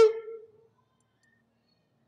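A man's preaching voice, intoned on a steady pitch, holds and fades out its last word in the first half second, then near silence with only a faint low room hum.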